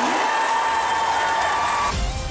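Large theatre audience applauding and cheering loudly, with one held high note over the crowd noise that rises slightly near the end.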